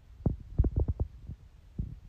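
A quick run of dull low thumps in the first second, then one more near the end, over a steady low hum.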